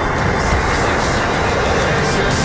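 Roar of a high-power rocket's motor at liftoff, starting suddenly and running steadily, with music under it. It is heard as video playback over lecture-hall speakers.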